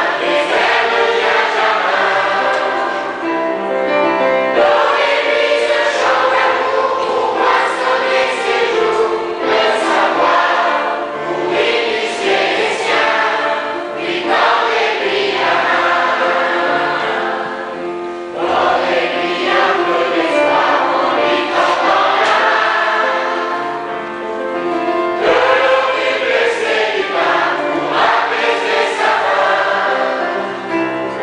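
A large children's choir singing a French song in phrases.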